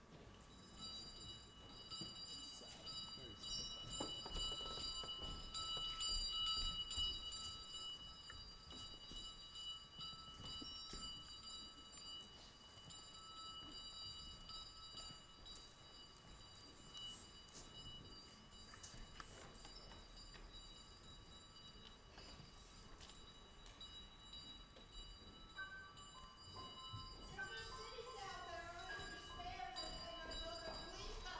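Faint theatre sound cue of sustained, bell-like ringing tones held at steady pitches. A wavering, voice-like pitched sound comes in a few seconds before the end.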